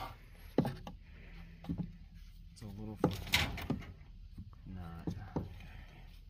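A few sharp knocks on wooden framing, one about half a second in and a quick pair about three seconds in, with low mumbled speech between them.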